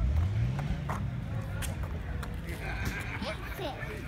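A car engine revving up briefly at the start, a low note rising over about a second, with people's voices in the background.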